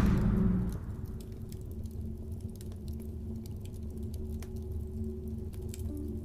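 Dark ambient music: a low steady drone with a few held tones, fading down in the first second, under sparse faint crackles of a burning log fire.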